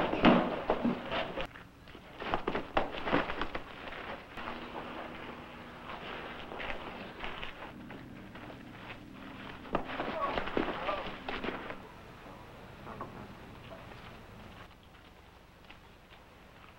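Fistfight in a dirt street: a quick run of sharp thuds and impacts in the first few seconds, then scuffling and voices that fade toward the end.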